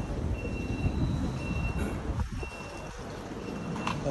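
Electronic warning beeper sounding evenly spaced half-second beeps at a high pitch, about one a second, that stop about two-thirds of the way through, over a low rumble.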